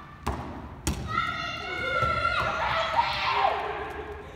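Two rubber playground balls thudding on a gym floor about half a second apart, then a long, high-pitched shout lasting about two seconds, echoing in the hall.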